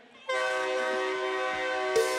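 A loud, sustained chord from the band's amplified instruments cuts in suddenly about a quarter second in and holds steady, several notes ringing together.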